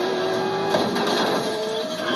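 Movie trailer soundtrack: music mixed with a steady mechanical whine that rises slightly in pitch and stops shortly before the end.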